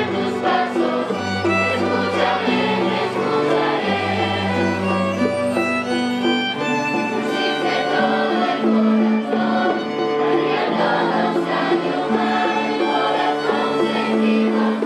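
A Spanish rondalla, a large ensemble of plucked guitars, bandurrias and lutes, playing a piece together, over long held bass notes.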